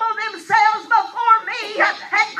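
A high-pitched voice praying aloud in rapid, unbroken syllables that form no recognisable words, the pitch sliding up and down.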